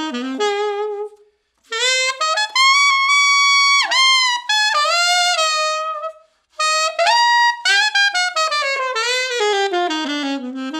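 Alto saxophone, a Kilworth Shadow with a Claude Lakey mouthpiece, played in a bright pop style. Short phrases are broken by two brief pauses; a long held high note falls off about four seconds in, and a descending run follows near the end.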